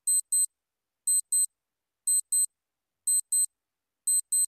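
Quiz countdown timer sound effect ticking: a short, high-pitched double tick once a second, four times.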